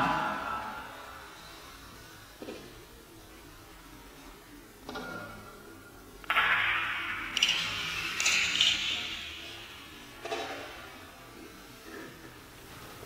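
Pool cue and balls knocking on a pool table: a few sharp clicks spread apart, one with a short ring. A louder rushing, hissy sound fills a few seconds in the middle.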